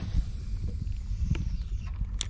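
Steady low wind rumble on the microphone over open water, with a few faint knocks.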